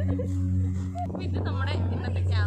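People's voices talking and laughing over a steady low drone, with higher, bending voices after about a second.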